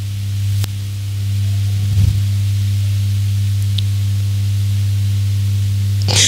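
Steady low electrical hum with hiss from the microphone and sound system, unchanged throughout. A faint low thump comes about two seconds in.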